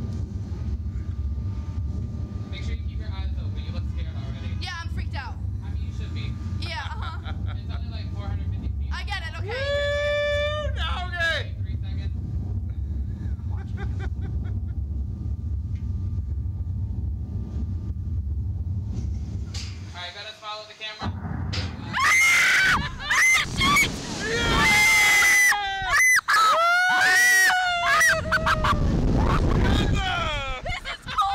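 Riders on a reverse-bungee slingshot ride: a steady low rumble while the capsule is held down, broken by a short laugh or shout, cuts off suddenly about two-thirds in as the capsule is released, followed by loud screaming and laughing with wind rushing past.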